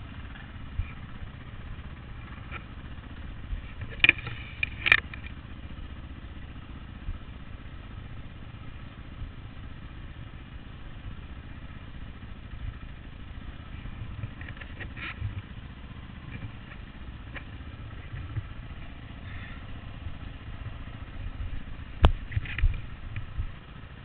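Dirt bike engine running at low revs as it crawls over rocky trail, with a couple of sharp knocks about four and five seconds in.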